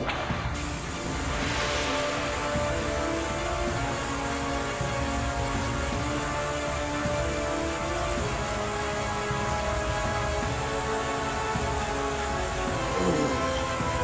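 Background music of sustained, steady tones, over an even rushing noise that fits the shallow stream.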